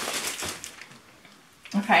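Plastic wrapping crinkling faintly as a plastic-bagged leather pillow cover is handled, fading to quiet partway through; a woman says "okay" near the end.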